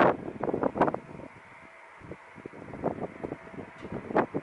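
Wind buffeting the camera's microphone in irregular gusts, strongest in the first second and again around the third second.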